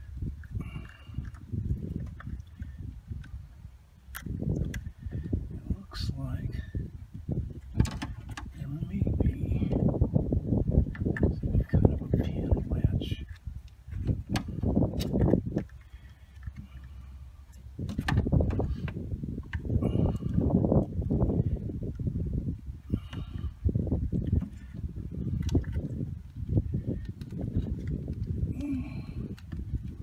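A plastic wiring connector in a truck's engine bay being worked by hand, giving a few sharp clicks over uneven surges of low rumbling noise.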